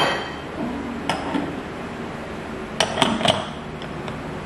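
Metal clinks and knocks of an espresso machine's portafilter being fitted up into the group head. A sharp clink comes at the start, another about a second in, and a quick run of three clinks around three seconds in.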